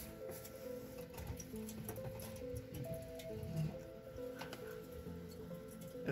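Quiet background music: a soft melody of held notes.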